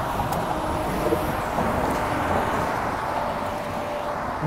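Steady traffic noise from a busy multi-lane road, cars and trucks passing, with a low rumble of wind on the microphone.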